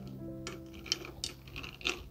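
A bar spoon stirring ice in a tall highball glass: a few light clinks of ice against the glass, over soft background music.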